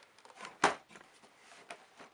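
Cardboard advent calendar box being handled and shifted: a few short knocks and rustles, the sharpest just over half a second in.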